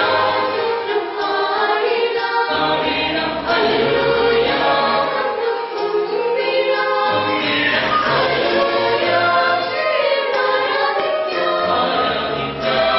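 Mixed choir of men's and women's voices singing a Christmas carol, with sustained notes that move to a new chord every second or two.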